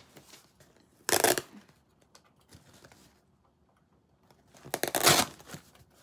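Packing tape being ripped off a cardboard box in two short, loud tears, one about a second in and one about five seconds in, with faint rustling and scraping in between.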